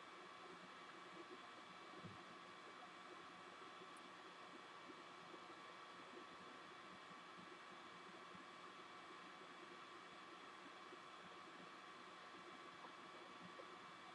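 Near silence: a faint steady hiss with a few faint steady tones, the background noise of the recording.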